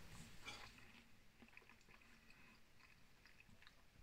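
Near silence with faint mouth sounds of chewing a mouthful of soft steak pudding, and a few small faint clicks.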